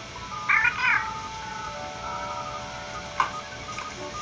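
Electronic warbling chirp from a small TV-show robot, a short burst about half a second in, followed by sustained background music tones.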